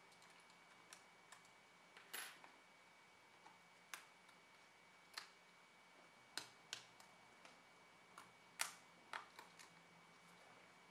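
Sparse, irregular small clicks and taps, about a dozen over the stretch, with one longer scraping rustle about two seconds in: laptop ribbon-cable connectors being pressed into their board sockets and a plastic spudger and screwdriver touching the board and chassis.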